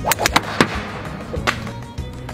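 Golf clubs striking golf balls: several sharp cracks in quick succession in the first half-second, then another about a second and a half in, over background music.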